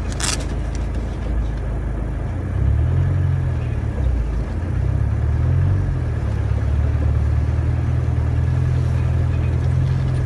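Land Rover engine running at low speed as it drives through a flooded ford, heard from inside the cab: the engine note rises and falls a few times about a quarter of the way in, then holds steady. A brief sharp noise sounds just at the start.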